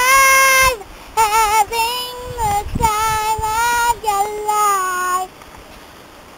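A child singing high, drawn-out notes, one of them with a quick wobbling quaver, in short phrases that stop about five seconds in.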